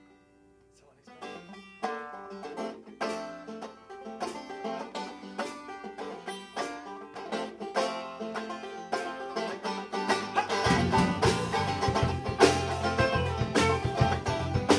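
Live band starting a song: a resonator banjo picks a quick run of notes, with electric guitar alongside. A low bass comes in about ten and a half seconds in and the music grows louder.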